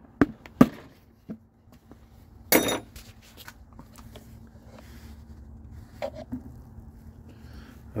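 A few sharp taps in the first second as a pointed punch is stabbed through the plastic top of a gallon jug of oil additive, followed by a short noisy rustle about two and a half seconds in. After that only a faint low steady hum is heard while the thick additive is poured.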